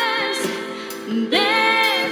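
A Christian song: singing voice over instrumental accompaniment, with a long held, wavering note in the last half second or so.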